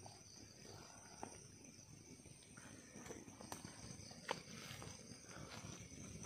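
Near silence, with a few faint clicks and rustles.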